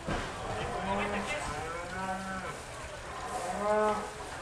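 Bull mooing three times, short level-pitched calls about a second apart, the last the loudest.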